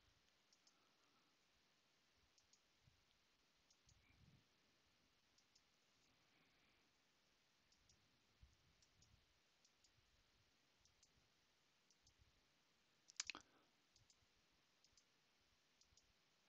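Near silence with faint, scattered computer mouse clicks as an eraser brush is clicked up to a larger size, and one short, louder click or knock near the end.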